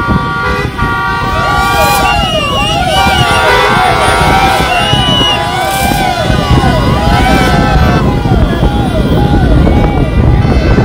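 Vehicle horns from a road convoy. Several steady honks come first, then many overlapping siren-type horns that rise and fall over and over, over traffic and wind noise.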